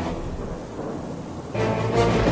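Rolling thunder with rain, under quiet background music. The rumble swells louder about one and a half seconds in.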